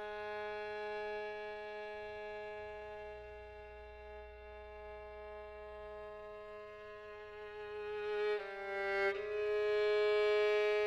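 Contemporary classical music: solo violin with chamber orchestra holding long sustained notes. The pitch shifts briefly near the end, and then the sound swells louder.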